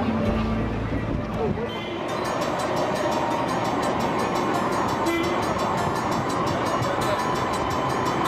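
Electric street tram running past on rails, with a steady hum and a fast, even high rattle that begin about two seconds in.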